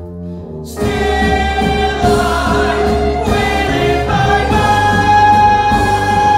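Live musical-theatre number: band and cast voices singing together, quiet held notes at first, then the full music comes in loudly just under a second in and stays loud.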